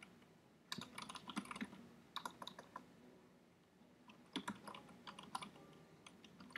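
Faint computer keyboard typing: a run of quick keystrokes from about a second in, a pause in the middle, then a second run near the end.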